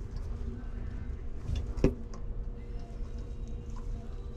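Gloved hands handling a bundle of wires and plastic connectors: faint rustling and small clicks, with one sharp click a little under two seconds in, over a steady low hum.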